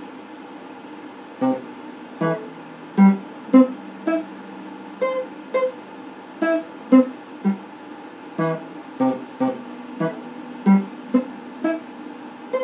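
Stratocaster-style electric guitar picked one note at a time in a slow melodic line, about two notes a second, each note ringing briefly before the next.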